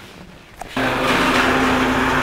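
An aloe juice homogenizer's electric motor switches on abruptly a little under a second in and then runs steadily, with a hum over a whirring, blender-like noise.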